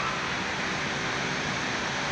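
Steady background noise: an even, continuous hiss with a low rumble, unchanging throughout.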